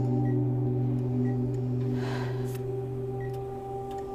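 A steady, sustained low musical drone of several held notes, with faint short high beeps about once a second like a hospital heart monitor.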